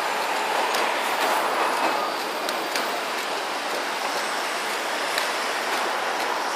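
Steady city road traffic: the mixed engine and tyre noise of passing cars, buses and trucks, with a few faint ticks.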